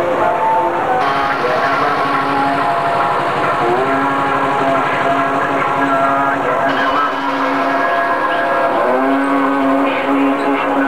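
Procession music: a wind instrument playing long held notes that step and glide in pitch, over a steady noisy background.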